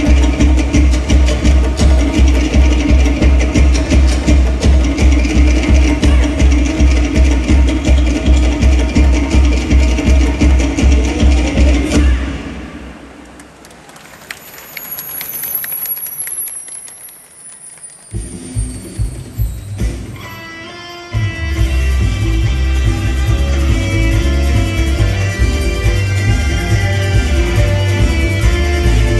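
Polynesian dance-show music played loud, with a fast, heavy, even beat. About twelve seconds in it drops away into a quiet break with a high falling tone, then a new section with a steady beat starts about seven seconds before the end.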